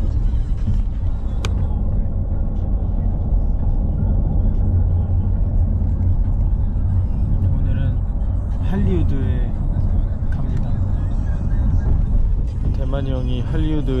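Steady low rumble of road and engine noise heard inside a moving minivan's cabin, with brief voices about two-thirds of the way in and again at the end.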